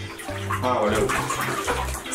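Water sloshing and splashing in a bathtub of ice water as a person lowers his legs into it, with a man's voice over it.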